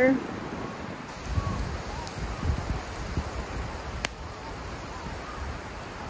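Gusty wind rumbling on the microphone, with faint distant honks of geese a couple of times in the first few seconds and a single sharp click about four seconds in.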